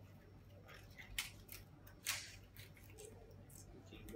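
Raw cabbage leaves crinkling and crackling as they are gathered and pressed into a bundle by hand on a wooden cutting board: a few short, crisp crackles, the strongest about two seconds in.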